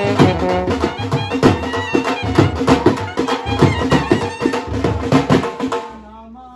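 Live traditional band music: a double-headed drum beaten in a fast, dense rhythm under a wind instrument playing the melody. The music cuts off suddenly near the end.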